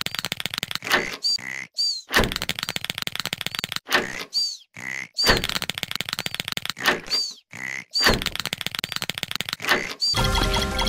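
Cartoon snoring sound effect: a long rattling snore in, followed by short high whistles that fall in pitch on the breath out. The cycle repeats about every three seconds, three or four times.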